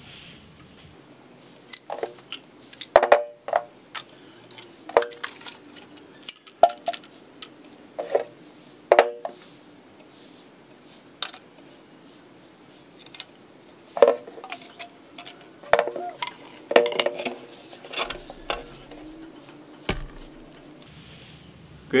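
Brass valves and PVC pipe fittings clinking and knocking against each other and the tabletop as they are handled and pushed together, in scattered sharp clicks with short pauses between them.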